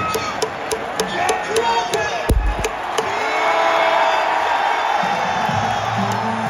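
Baseball stadium crowd cheering and clapping in a steady rhythm, about three to four claps a second, with a dull thump a little over two seconds in. The crowd's voices swell after about three seconds, and music begins near the end.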